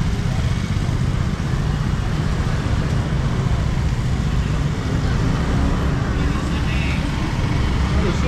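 Motor scooters running slowly past through a crowded street market, a steady low engine rumble mixed with the background chatter of shoppers and vendors.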